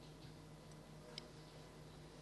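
Near silence: room tone with a faint steady hum and a couple of faint ticks about a second in.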